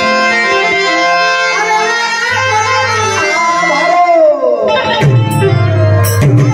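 Harmonium playing a melody over held notes, with a boy's voice singing gliding phrases of a Gujarati Santvani bhajan. Tabla strokes come in near the end.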